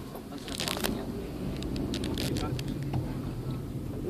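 Car engine and tyre noise heard from inside the cabin as the car moves slowly, a steady low hum with a few brief clicks and crackles.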